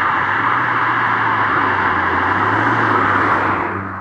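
Ford Fiesta ST hot hatch driving past at speed, a steady mix of engine and tyre noise that fades away near the end as the car goes by.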